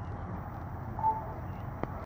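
Steady low background rumble of room ambience, with a short high tone about a second in and a sharp click near the end.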